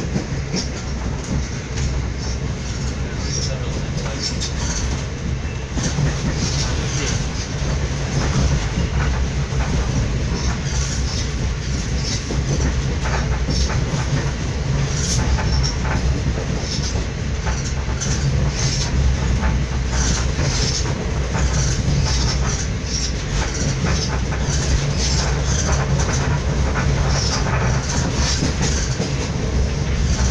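Inside a moving train carriage: the steady rumble of the train running, with frequent clattering and rattling from the wheels and carriage.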